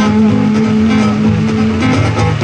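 Live acoustic guitar strumming with a sung note held over it for most of the two seconds.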